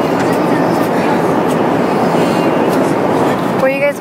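Steady airliner cabin noise in flight, an even hum of engines and airflow. A voice comes in near the end.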